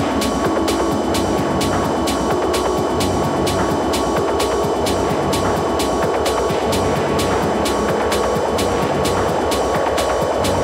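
Techno played in a DJ mix: a steady, driving beat with sharp hi-hat ticks about four times a second over a dense synth layer and a held high tone.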